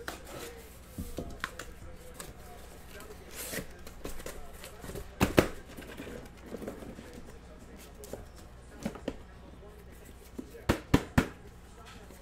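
A cardboard shipping case being opened and sealed hobby boxes lifted out and stacked. Cardboard scrapes and rustles are broken by sharp knocks as boxes are set down: the loudest comes about five seconds in, and three quick ones fall near the end.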